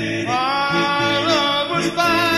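Doo-wop style vocal harmony song: a lead voice glides up about a quarter second in and holds the note over lower harmony parts that move underneath.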